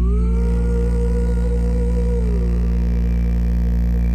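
JBL Flip 4 portable Bluetooth speaker playing a bass-heavy track loud, its passive radiator pumping visibly: a deep, steady bass with a wavering higher tone held above it.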